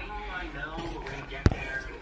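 A quiet man's voice murmuring, with a single sharp knock about one and a half seconds in.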